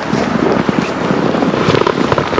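Wind buffeting the camera's microphone, with dense, irregular crackling throughout.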